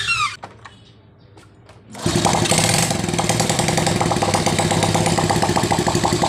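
Honda Grand's small single-cylinder four-stroke engine starts suddenly about two seconds in and runs at a steady, evenly pulsing idle, with its cam sprocket and chain exposed because the valve cover is off. It fires straight away, the sign that the cam timing has been set correctly at top dead centre.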